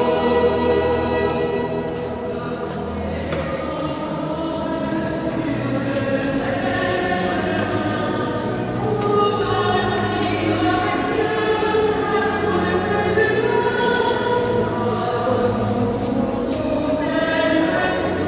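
Choir singing a slow sacred hymn with long held notes over a steady low bass.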